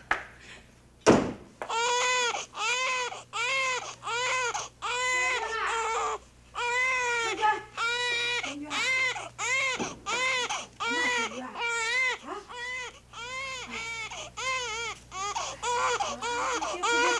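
A baby crying hard without a break, one rising-and-falling wail after another, about one and a half a second. A single sharp knock comes just before the crying starts, about a second in.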